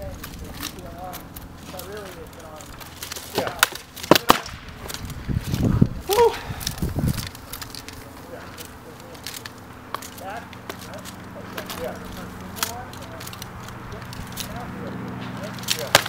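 Sword-and-shield sparring: a quick cluster of sharp knocks about three to four seconds in as blows land on the shields, then scattered lighter knocks, with a last strike near the end. Faint voices can be heard in the background.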